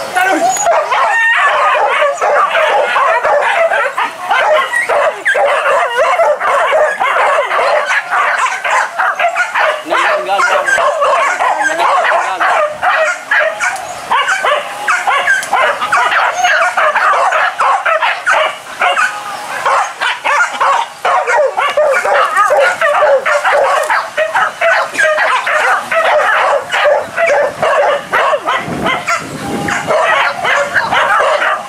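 A pack of hunting dogs yelping and barking without pause, many short high calls overlapping.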